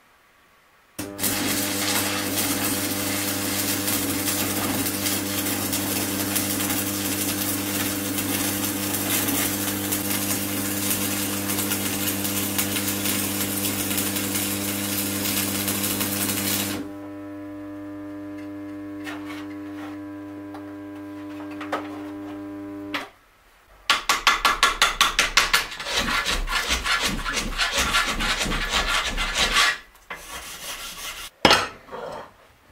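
Electric arc welding on metal: a steady crackling buzz for about fifteen seconds, then a quieter buzz with only occasional crackles for several seconds more before it stops. After a short pause, a run of fast, rhythmic scraping strokes on metal.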